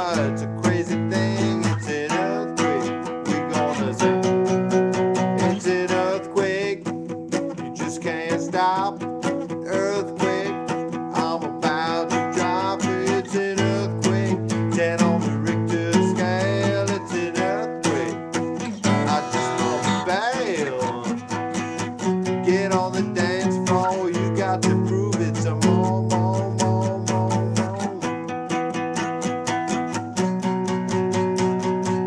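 Acoustic guitar strummed in a steady, busy rhythm with many quick strokes: the instrumental intro of a song, before the vocals come in.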